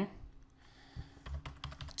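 Computer keyboard typing: a short, fairly faint run of key clicks in the second half as a few characters are typed.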